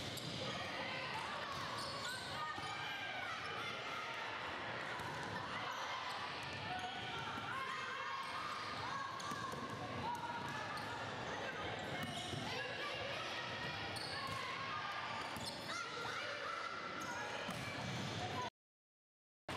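Live gym sound of an indoor volleyball rally: many overlapping voices of players calling and shouting, echoing in a large hall, with repeated sharp hits of the ball.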